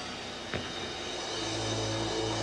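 A live heavy metal band's amplified instruments between numbers: held notes fading out, a short click about half a second in, then a low droning note swelling in about a second and a half in.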